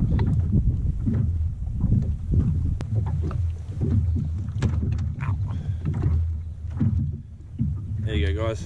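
Wind rumbling on an outdoor camera microphone over a kayak sitting on open water, with scattered light clicks and knocks.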